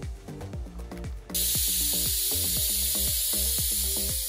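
Background music with a steady beat; about a second in, a loud steady hiss starts as a Tiger Pro fogging lance sprays a fine mist of water and disinfectant driven by compressed air.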